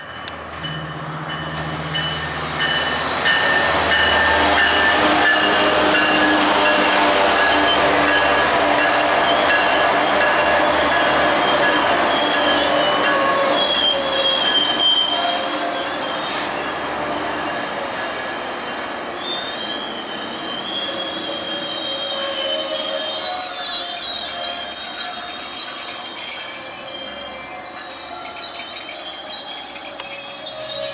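Metrolink commuter train passing close by: the locomotive's diesel engine drone is heard first, then the steady rumble of the bilevel coaches rolling past. High-pitched wheel squeal comes in about halfway through and carries on over the last third.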